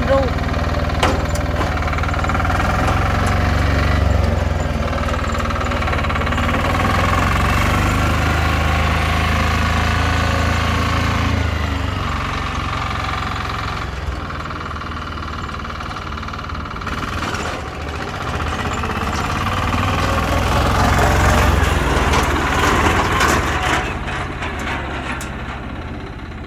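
Yanmar mini dump carrier's diesel engine running as the carrier is driven, its note rising and falling with the throttle, quieter in the middle and climbing again near the end.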